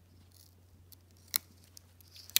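Folding pocket multi-tool being handled: a few faint clicks and then, a little past halfway, one sharp metallic click as a folding tool on the knife is worked.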